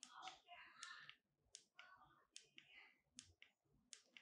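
Faint clicks of the buttons on the Godox SL60W's small wireless remote, pressed one at a time under a gloved thumb, about one press every second, each stepping the light's brightness value up. Soft rubbing of the glove on the remote comes between the first presses.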